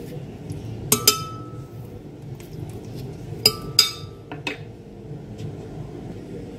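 Metal spoon clinking against a glass blender jar while kiwi flesh is scraped into it: two pairs of sharp clinks with a brief ring, about a second in and about three and a half seconds in.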